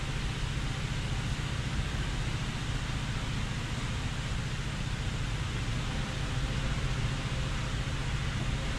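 Steady low hum with an even hiss of background noise, unchanging throughout.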